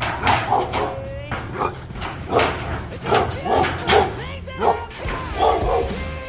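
A dog barking repeatedly, a run of short loud barks through the whole stretch, over background pop music.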